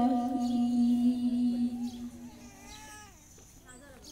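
A boy singing into a handheld microphone, holding one long note that fades out about two and a half seconds in, followed by softer, wavering vocal sounds and a short pause near the end.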